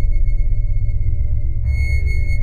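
Electronic score: a steady high sine-like tone held over a deep low drone. The tone sounds again with a brighter attack near the end.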